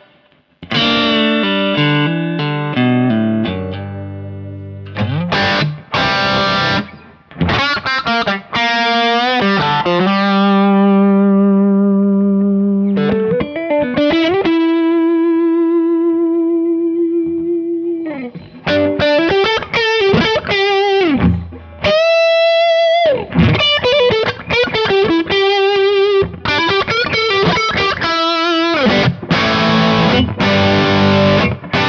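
Gibson Les Paul electric guitar played through a Kemper profile of a 1965 Fender Bassman, with a fat, driven tone. After a brief gap at the start come chords and riffs, long held notes around the middle, and a note bent upward a little past two-thirds of the way through.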